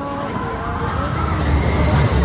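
Steel roller coaster train running along its track, a low rumble that grows louder near the end, with voices in the background.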